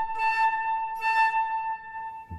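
Concert flute holding one steady high note, with an airy hiss that comes and goes. It is played with the upper lip rolled back to aim the airstream down into the flute.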